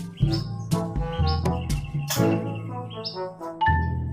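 Background music with a steady beat and pitched instrument notes, with short, high rising chirps over it.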